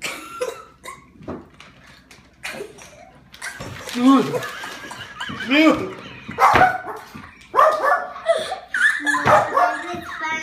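A man and a boy laughing hard and crying out in loud bursts as the man reacts to a foul-tasting jelly bean, quieter for the first few seconds and building from about three and a half seconds in.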